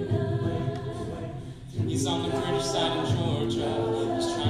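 Mixed-voice a cappella group singing held, harmonized chords without words. The sound dips briefly a little before halfway, then a new chord comes in.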